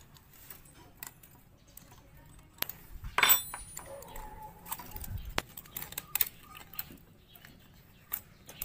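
A wrench and a feeler gauge clicking and clinking against a motorcycle engine's valve adjuster while the adjuster lock nut is tightened and the valve clearance checked. A sharp, ringing metal clink about three seconds in is the loudest.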